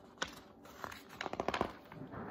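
Handling of a picture book: a sharp tap, then a quick run of small clicks and paper rustles in the second second.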